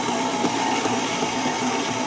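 Electric stand mixer running steadily with a scraper-edge paddle attachment, mixing cake batter: an even motor hum with a higher steady whine over it.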